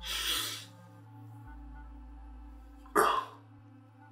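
A man's breath sounds through his hands: a breathy burst at the start and a sharp, louder cough about three seconds in, over low, held music notes.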